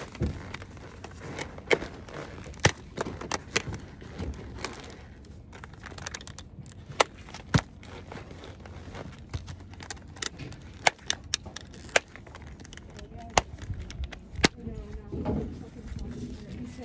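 Plastic alpine ski boot being buckled: a long irregular series of sharp clicks and snaps from the metal bail buckles ratcheting into their ladders and the stiff plastic shell being clamped shut, about a dozen louder ones standing out.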